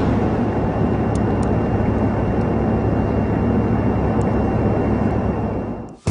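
Steady drone of aircraft cabin noise, an even rumble with a low hum, with two faint clicks a little after a second in; it cuts off suddenly just before the end.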